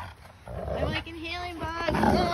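Husky-type dogs making a run of short, rising-and-falling woo calls, starting about half a second in, the first ones rough and noisy.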